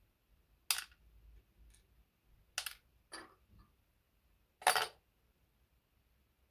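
Small scraps of the cast copper-zinc-aluminium-tin alloy dropped one at a time into a plastic bowl on a kitchen scale: four short clinks spread over a few seconds, the loudest near the end.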